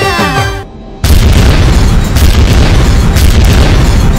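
A singing voice with music cuts off under a second in. A moment later a loud cinematic boom hits, followed by a heavy, steady rumbling roar of fire and explosion effects over music.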